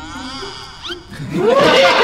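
A man's drawn-out voice, then several men burst into loud laughter about a second and a half in.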